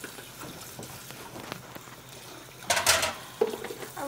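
Kitchen clean-up noise: a low steady hiss, then a short, loud rustling clatter about three seconds in, as dishes are handled and dried at the counter.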